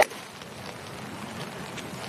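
A golf iron striking the ball, one sharp crack right at the start just after a quick swish of the club, solidly struck. After it there is only a steady outdoor hiss.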